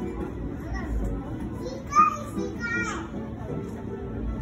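Background music and voices of a crowd, with a child's high-pitched voice calling out about two seconds in, the loudest sound.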